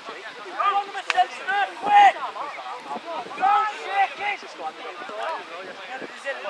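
Several voices of rugby players and spectators shouting and calling over one another, the words unclear, loudest around the second and fourth seconds. A single sharp click sounds about a second in.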